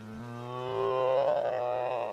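Hadrosaur call: one long, low, pitched bellow that swells in loudness and cuts off suddenly near the end.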